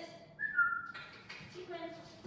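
A short whistled note of about half a second, stepping down in pitch partway through, set between brief bits of high-pitched voice.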